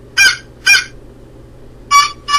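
Short honks from a sound-effects recording, like a horn or a clown's horn. Two quick honks come in the first second, and another begins right at the end.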